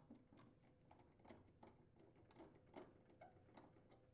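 Near silence broken by a dozen or so faint, irregular clicks of a nut driver loosening the screws that hold a GE refrigerator's ice maker assembly in place.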